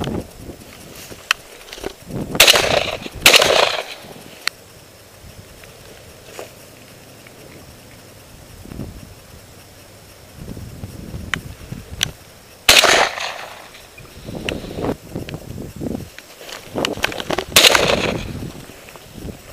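Four shotgun shots, each a sharp blast with a short ringing tail: two about a second apart a couple of seconds in, one about two-thirds of the way through, and one near the end. Light clicks and rustling come between the shots.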